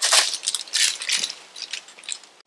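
A plastic bag of bolts, nuts and washers being handled: crinkling and small metal clinks in an irregular string that grows fainter toward the end.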